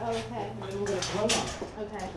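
Metal clanking from raku tongs and a metal bucket as a hot pot is pulled and set in, with two sharp clinks, the louder about a second and a quarter in. Voices talk underneath.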